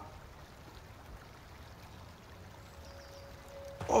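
Faint, steady outdoor background of a slow river: a soft, even wash of water with no distinct splashes.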